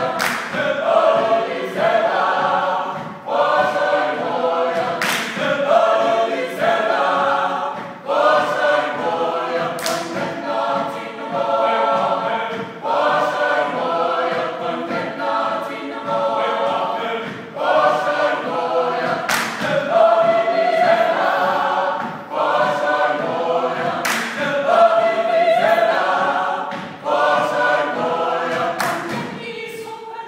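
A mixed a cappella vocal ensemble sings a Georgian polyphonic song in several parts, in short phrases with brief breaks between them. A few sharp hits, like claps or stomps, fall every five seconds or so.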